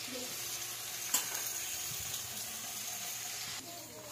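Green mussels sizzling in a hot wok, a steady hiss with one sharp clink about a second in. The sizzle drops off shortly before the end.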